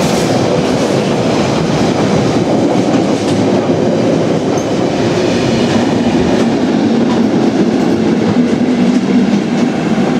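An engineers' train of wagons with Class 73 locomotives at each end passing at speed close by, loud and continuous, its wheels running over the rails. A steady low hum joins about halfway through as the rear Class 73 pair goes by.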